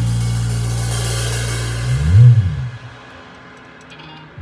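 A jazz combo's last chord: a cymbal ringing out over a held low bass note. Just after two seconds the bass slides up and back down, then everything dies away to quiet.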